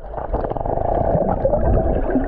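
Muffled underwater sound of a swimming pool, heard through a submerged camera: bubbles and churning water making a dense, dull gurgle with many small pops, with nothing above a low, dull range.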